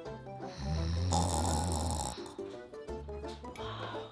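A single snore sound effect, starting about half a second in and lasting about a second and a half, over light background music.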